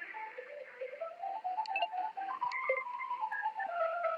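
Telephone hold music: a melody of held notes, thin-sounding through the phone line.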